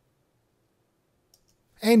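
Near silence broken by two faint, short clicks close together about a second and a half in, just before a man's voice begins speaking at the end.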